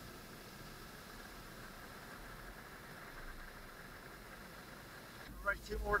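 Ocean surf breaking and washing up the beach, a steady wash of noise.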